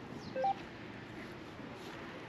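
A short two-note electronic beep, a lower note then a higher one, about half a second in, over a steady background hum.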